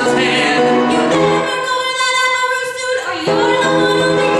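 A man and a woman singing a musical-theatre song, with one long held note in the middle.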